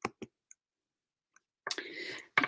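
A quiet pause with a few faint, short clicks, then a short noisy sound near the end.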